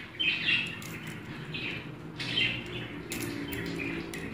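An African grey parrot feeding from a bowl of sunflower seeds, with sharp little clicks as its beak cracks and shifts the seeds. A few short bird chirps come about a second apart.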